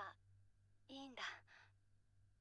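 A woman's soft, breathy voice says a short line of anime dialogue about a second in, faint and sigh-like. Just before it, the tail of a previous vocal sound ends.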